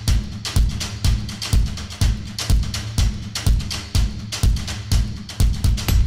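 Trailer music: a steady, driving drum beat of about two hits a second over a sustained low bass.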